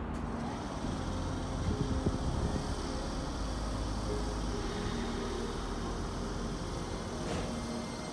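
Keisei 3000-series electric commuter train at a station platform: a steady hum of its running equipment with several faint steady tones, and a short click about seven seconds in.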